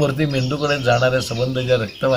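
A man speaking steadily in a low voice, in continuous syllables.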